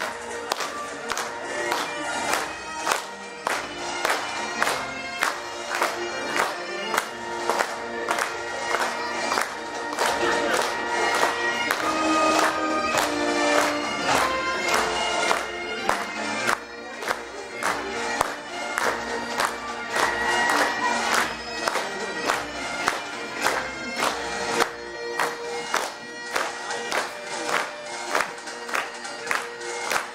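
Bagpipe music: a pipe melody over steady sustained drones, with a regular beat underneath.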